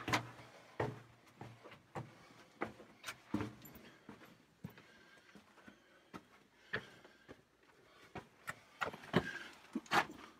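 Fairly faint, irregular footsteps and scuffs on a rocky floor, with small knocks, from someone making his way through a low, narrow rock-cut tunnel; they come a little quicker and louder near the end.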